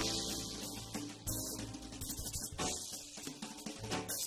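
Live small jazz band playing a swing tune: a drum kit with an accented cymbal crash roughly every second and a quarter, over sustained low upright double bass notes and other instruments.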